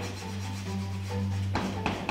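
Chalk scratching on a blackboard in short drawing strokes, heaviest in the last half second, over quiet background music.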